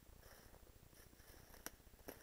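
Near silence: the faint, fluttering low rumble of a handheld camera carried on the move, with soft rustles and one sharp click about three-quarters of the way through.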